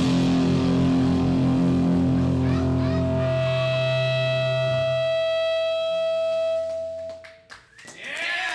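Distorted electric guitar and bass ringing out on a held final chord, live, with a steady high-pitched guitar feedback tone coming in about two and a half seconds in. The sound drops away sharply near the end as the song finishes, with a few sharp clicks.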